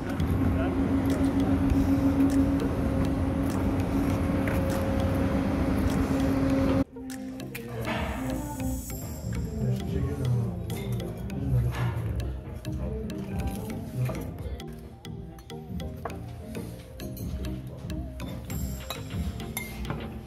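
Restaurant table sounds: dishes and cutlery clinking against each other amid people's voices and background music. For the first seven seconds a steady noise with a held low hum plays instead, and it cuts off abruptly.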